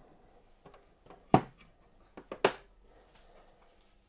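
A plastic filament spool being set into a filament dryer's chamber and the lid closed: a few light clicks and two sharp knocks about a second apart.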